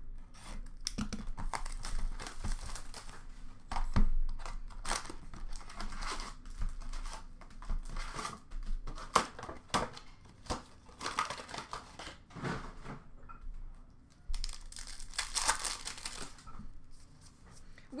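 A cardboard trading-card box and its foil card packs being torn open and handled, in an irregular run of rips and crinkling rustles.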